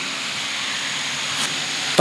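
A steady hiss of background noise from the hall's microphones and sound system, with no speech. It holds an even level throughout and sits mostly in the upper range.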